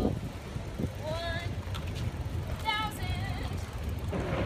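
A low, steady rumble with two brief snatches of people's voices, about a second in and again near three seconds.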